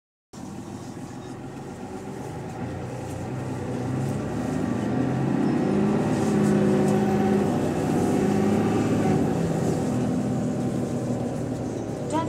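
City bus engine and drivetrain heard from inside the passenger saloon as the bus drives on. It grows louder about four seconds in, its pitch rising and falling for a few seconds before it settles.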